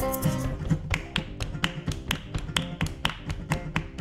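Live folk band music: the full band with acoustic guitar and banjo drops out about half a second in, leaving a bass guitar line under sharp percussion taps, about four a second.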